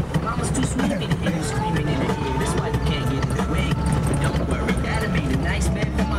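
Lada Cossack 4x4 engine running steadily as it drives over rough ground, with scattered knocks and rattles from the bumps.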